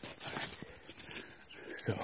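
Footsteps crunching through dry fallen leaves at a quick walk.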